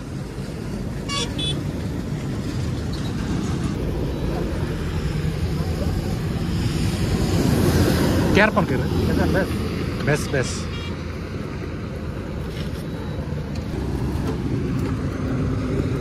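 Highway traffic heard from a motorcycle: a steady engine and road rumble with heavy trucks going by, growing loudest about halfway through. A short vehicle horn toot sounds about a second in.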